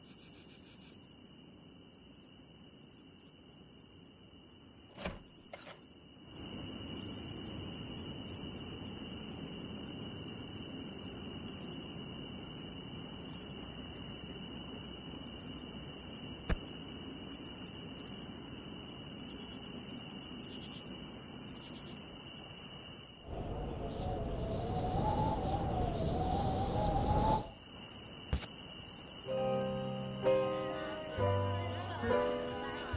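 Steady high chirring of crickets in a night ambience, with two clicks about five seconds in. A louder rushing sound carrying a wavering tone swells near the end and cuts off, and piano music comes in just before the end.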